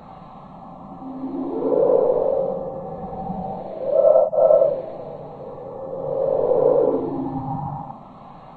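Synthesized sci-fi soundtrack: low pitched tones swelling and fading three times, each swell gliding up in pitch and back down. The middle swell, about four seconds in, is the loudest and breaks off for an instant.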